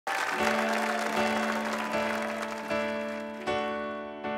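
Studio audience applause fading out as a keyboard intro starts under it: a held low note, then sustained chords struck again about every three-quarters of a second, each dying away.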